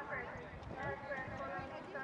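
Indistinct voices talking in the background, with the hoofbeats of a horse cantering on a sand arena.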